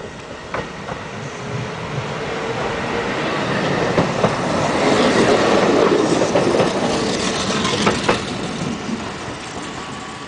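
Kintetsu Mowa 24 series electric inspection train pulling out and running past close by. It builds to its loudest about five to six seconds in, then fades. Its wheels clack over rail joints in pairs.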